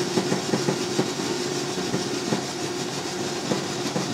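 Running fusor rig: a steady machine hum with a constant hiss, and irregular faint ticks scattered through it while the tank is still conditioning and outgassing.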